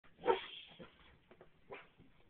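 A dog barking: one loud bark about a third of a second in, then a few quieter barks.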